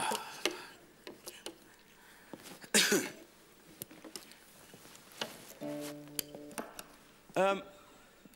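Acoustic guitar being handled: it is lifted off a stand and strapped on, with scattered small knocks and clicks. Just before 6 s a steady pitched tone is held for about a second and then cut off, and there are brief bursts of voice near the start and about three seconds in.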